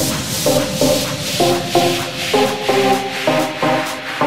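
Electronic dance music in a breakdown: the kick drum and bass have dropped out, leaving rhythmic synth chord stabs under a hissing white-noise sweep.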